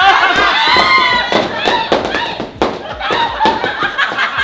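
Several people shrieking and laughing over repeated sharp smacks of foam pool noodles hitting.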